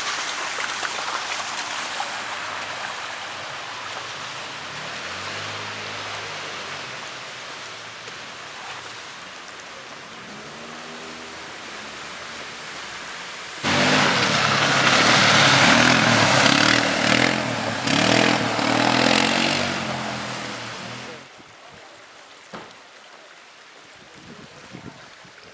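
A vehicle engine in a snowy street, its pitch rising and falling, with a steady rushing noise; it becomes suddenly much louder about two thirds of the way in for several seconds, then drops away.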